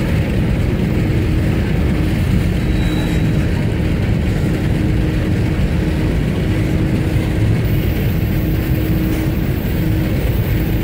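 Covered hopper cars of a long freight train rolling slowly past, their wheels giving a steady, dense rumble on the rails with a faint low tone coming and going.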